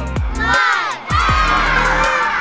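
A group of children's voices shouting a countdown, the last call about a second in held as a long cheer, over upbeat electronic music with a steady kick-drum beat.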